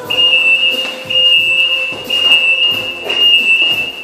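Loud high-pitched electronic beeping: a single steady tone held for about a second at a time with short breaks, four beeps in a row.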